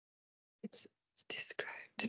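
A person whispering a few quiet words, starting about half a second in after silence.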